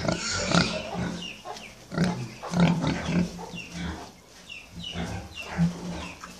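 Several pigs grunting, short grunts one after another, with a brief lull about four seconds in.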